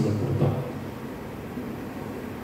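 The closing chord of a Taizé chant, voices with instrumental accompaniment, dies away over the first half-second. A low, steady hum of the hall's sound system remains.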